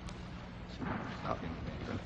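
Hearing-room background on an old broadcast recording: a steady low hum and hiss, a single sharp click just after the start, and faint murmuring voices about a second in.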